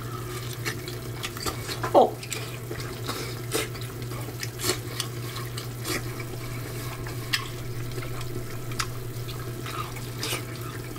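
Pot of hot-pot broth bubbling on a stovetop, with irregular small pops over a steady low hum. A short gliding vocal sound comes about two seconds in.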